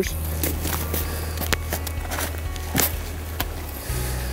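Game shears snipping through a pheasant's wing joints: about six sharp, crunching snips, roughly one every half second.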